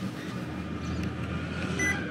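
A short, high electronic beep near the end, one of a series sounding about every two seconds, over a steady low background hum and noise.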